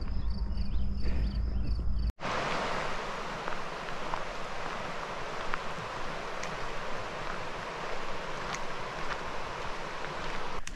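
Wind buffeting the microphone with a steady high insect trill, then after a sudden cut about two seconds in, a shallow river running over rocky riffles: a steady rushing of water.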